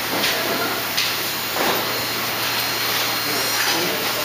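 Steady hiss of background noise in a factory assembly room, with a few faint clicks as small parts are handled at the bench.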